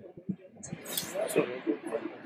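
Audience members starting to talk among themselves, several voices overlapping and growing louder about a second in.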